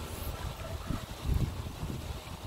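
Wind buffeting the microphone in low, uneven gusts, strongest just before one second and again around one and a half seconds in.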